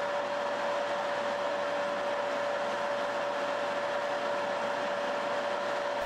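Metal lathe running at a steady speed with a constant whine, while a cutting tool bores out the drilled hole in the end of a steel rifle barrel to rough out the chamber.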